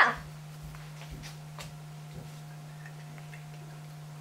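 A steady low hum with a fainter, higher steady tone above it, and a few faint ticks about a second in and again around a second and a half and two seconds in.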